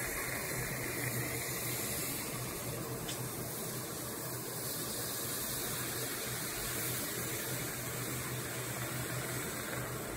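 Milk tea sizzling and bubbling as it is poured into a heated clay cup, a steady hiss while the froth boils up and spills over the rim.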